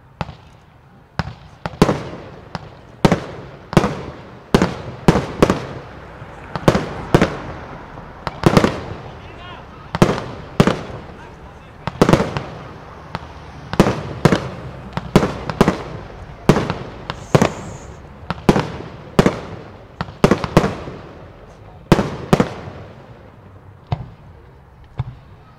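Aerial fireworks display: shells bursting overhead in rapid succession, roughly one to two sharp bangs a second, each trailing off before the next.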